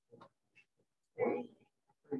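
A person's short, low vocal sound, lasting under half a second about a second in, with a few faint clicks around it.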